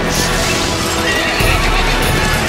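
A horse neighing over loud instrumental music, a wavering call about midway through.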